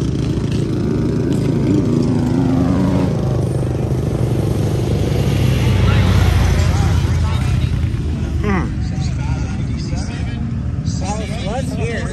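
A racing side-by-side UTV's engine running hard as it passes on a dirt track, growing louder to a peak about halfway through and then fading, with voices in the background.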